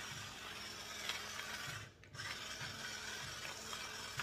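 Salt grinder grinding salt: a steady gritty rasp that breaks off briefly about halfway through, then starts again.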